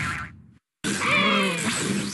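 Cartoon sound effects from a TV channel bumper: the end of one jingle fades away, there is a brief dead-silent gap at an edit, then a new effect starts loud with falling, wobbling tones over music.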